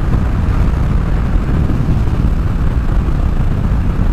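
Triumph Rocket 3's big three-cylinder engine cruising at highway speed, heard as a steady low rumble mixed with wind and road noise.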